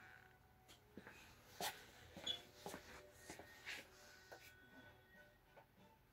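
Near silence: quiet room tone with a few faint scattered clicks and knocks.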